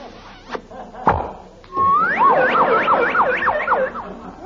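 Radio-comedy sound effect for a kiss that sends a man spinning: a short thump about a second in, then a whistle that slides up and warbles up and down about three times a second for two seconds.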